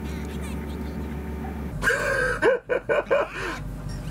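High-pitched cries from a cartoon soundtrack: a short run of bending yelps, starting about two seconds in, over a steady low hum.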